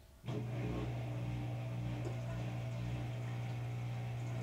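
An Electrolux front-load washer's pump switches on suddenly about a quarter second in and runs with a steady low hum.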